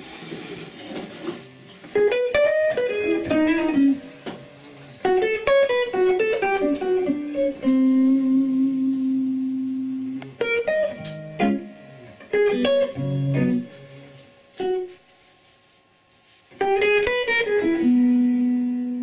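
Hollow-body electric jazz guitar playing fast single-note runs in short phrases separated by pauses, two phrases ending on a long held note.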